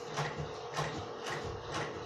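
Rhythmic mechanical clicking, about four clicks a second, over a faint steady hum.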